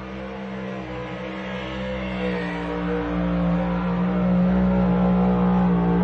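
Farmall-bodied pulling tractor's engine running wide open as it drags a weight sled down the track, a steady drone that grows louder as the pull goes on.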